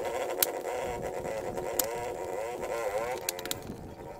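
A vehicle engine running steadily, its pitch wavering about three seconds in before it fades. A couple of sharp knocks sound over it.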